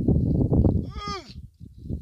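Gusty rumbling wind noise on the microphone over open water, with a person's short shout that rises and falls in pitch about a second in.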